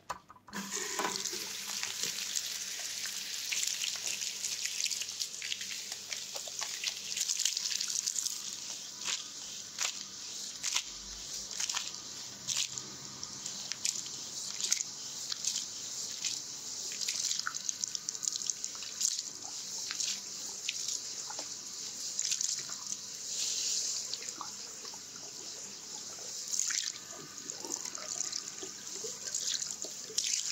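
Handheld shower sprayer at a hair-washing basin running onto hair and splashing into the sink as shampoo lather is rinsed out, with small splashes and wet scalp-rubbing noises over the steady hiss of the water. The water comes on suddenly about half a second in.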